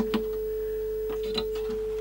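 Steady single-pitch test tone from a portable CRT TV's speaker, the audio of the colour-bar test signal it is tuned to, with a few faint clicks as its controls are adjusted.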